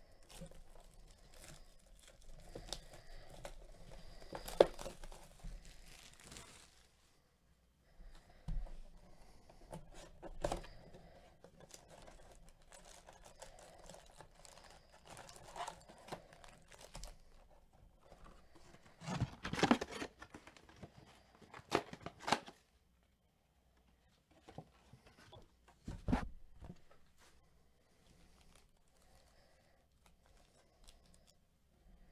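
Plastic shrink-wrap being torn off a trading-card hobby box, crinkling in bursts, then foil card packs rustling and crackling as they are handled and stacked, with a few louder crackles in between.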